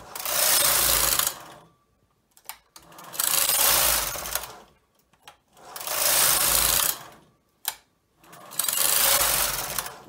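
The carriage of a Brother 260E knitting machine, coupled to the ribber carriage, is pushed back and forth across the double needle bed four times, each pass a loud swishing rattle of about a second and a half. A few sharp clicks fall in the pauses between passes.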